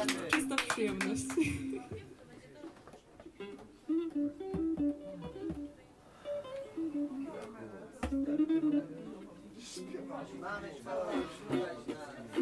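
Small acoustic string instrument strummed briskly for the first two seconds, then single notes plucked one at a time, with pauses in between. Someone talks quietly near the end.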